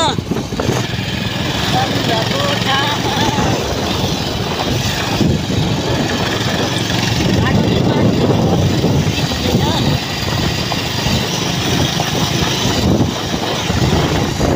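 Motorcycle engine running steadily while riding, with heavy wind noise rushing over the microphone.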